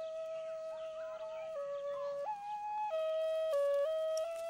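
End-blown flute playing a slow melody of long held notes, stepping between a few nearby pitches, with one higher note about two seconds in.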